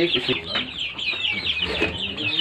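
A brood of young chicks peeping continuously, many high, short chirps overlapping in a dense chorus.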